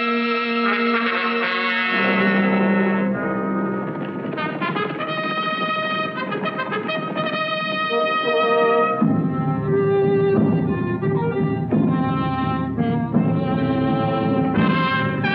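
Orchestral film score led by trumpets and trombones, playing sustained, changing chords; about nine seconds in the lower instruments come in and the music grows fuller.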